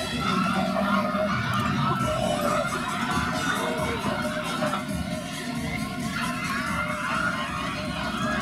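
Spectators and teammates cheering and shouting encouragement to the runners, many voices at once, steady throughout.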